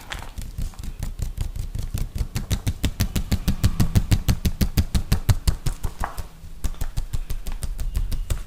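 Fingertips tapping fast on a plastic pouch of sunflower oil held close to the microphone: an unbroken run of dull taps at about seven a second.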